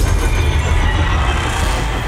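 Film sound effect of metal claws dragging along asphalt: a loud grinding, screeching scrape over a heavy low rumble.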